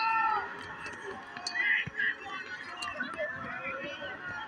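Voices of spectators talking and calling out, too unclear to make out, over a steady background of crowd noise.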